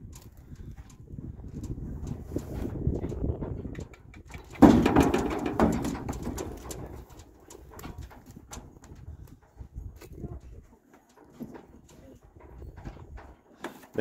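Horses and mules shifting in a stock trailer, with scattered knocks of hooves and bodies against the trailer. A loud fluttering snort comes about five seconds in.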